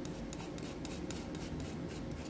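Steel palette knife scraping and scooping thick sculpture paste off a palette: a run of short, irregular scrapes.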